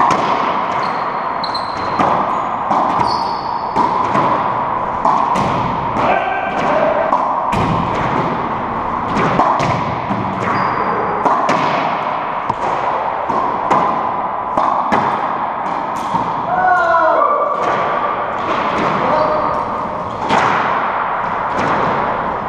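Racquetball rally in an enclosed court: repeated sharp cracks of the ball off racquet strings and the walls and floor, each ringing in the hollow court. Short squeaks of rubber-soled shoes on the hardwood floor come between the hits, with a longer squeal about two-thirds of the way through.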